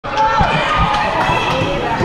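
A few dull thuds of a ball bouncing on foam mats, under the chatter of children and adults in a large room.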